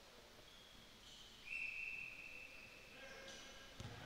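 A referee's whistle blown once, faintly: a steady high tone lasting about a second and a half, with a shorter, fainter tone just before it. A dull thump comes near the end.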